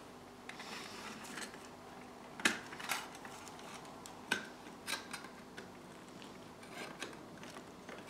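Flat-nose pliers clicking lightly against the tinplate body of a Hornby 0 gauge clockwork locomotive as a bent post is straightened: a scattering of small metallic clicks, the sharpest about two and a half seconds in and again just past four seconds.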